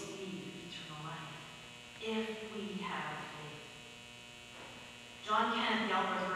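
Steady electrical mains hum under indistinct speech. The speech stops for about two seconds past the middle, leaving the hum alone, and starts again louder near the end.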